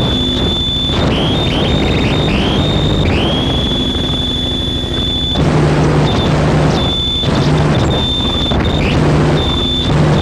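Harsh noise music: a dense wall of distorted noise with a piercing high tone that cuts in and out and swoops upward several times. In the second half, a low buzzing drone comes in short pulses.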